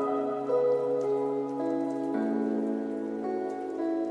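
Soft ambient background music: sustained synth chords that shift a few times, over a faint patter of scattered ticks like rain.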